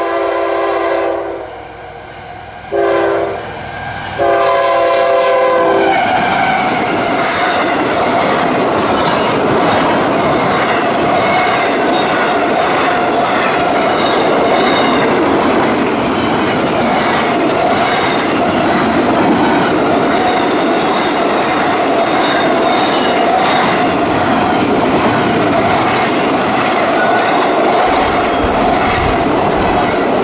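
Diesel freight locomotive's air horn sounding for a grade crossing as it approaches: a long blast, a short one and a long one. From about six seconds in, a double-stack intermodal freight train passes close by, its wheels clattering steadily over the rail joints with a steady tone running over the noise.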